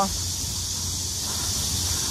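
Steady high-pitched hiss of a cicada chorus in the trees, with a low rumble underneath.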